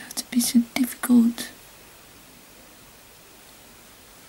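A woman's voice: a few short muttered words and an "oh" in the first second and a half, then only a faint steady room hiss.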